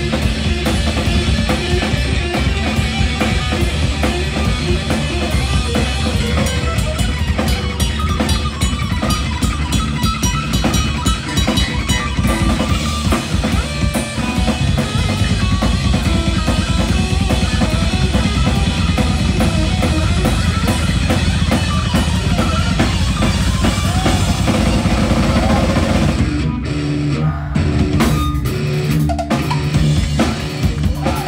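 Live rock band playing an instrumental passage with no vocals: bass guitar, electric guitar and drum kit, the heavy bass lines prominent. About four seconds from the end the cymbals drop out briefly, leaving bass and guitar.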